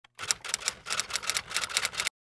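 Typewriter keystroke sound effect: a quick, even run of key strikes, about six or seven a second, that stops suddenly at the end.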